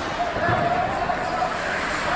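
Indoor ice hockey game sound: spectator voices, one held call over the crowd for about a second, and a low thud about half a second in from the play on the ice.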